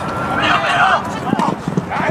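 Shouting voices of football players and onlookers on a grass field, with a quick run of dull thuds and footfalls on the turf in the second half.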